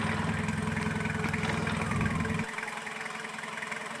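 Engine of an overturned off-road 4x4 running steadily at idle while the vehicle lies on its side, then cutting out abruptly about two and a half seconds in.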